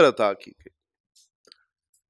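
A man lecturing in Urdu through a microphone finishes a phrase about half a second in, followed by a pause of near silence.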